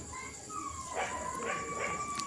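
A drawn-out animal call in the background, one thin high note lasting about a second and a half and sliding slightly down in pitch.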